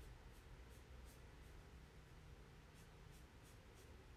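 Faint drawing strokes as a bear picture is coloured in: short soft scratches, a few in the first second and a quicker run of them in the last two seconds, over a low room hum.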